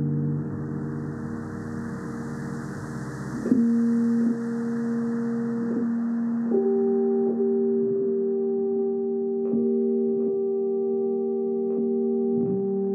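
Ambient background music of sustained, bell-like tones that move to new notes about three and a half and six and a half seconds in, over a soft airy wash that fades away midway.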